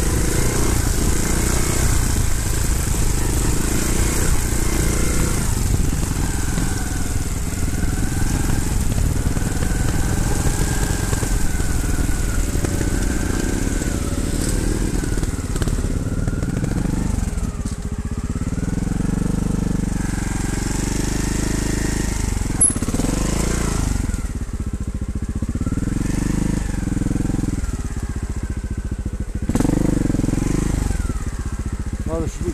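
Trials motorcycle engine close to the microphone, running at a steady throttle for about the first half, then revved up and down with repeated rises and falls in pitch through the second half.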